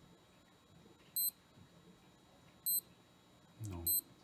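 SKMEI digital watch beeping three times, short high beeps about a second and a half apart, each the confirmation beep of a button press.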